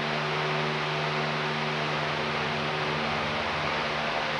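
Steady background hiss with a low, constant hum underneath and no distinct events.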